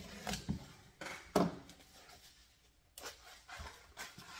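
A knife slitting the tape on a small cardboard box, then the box being handled and its flaps pulled open: scattered short scrapes and knocks, the sharpest about a second and a half in.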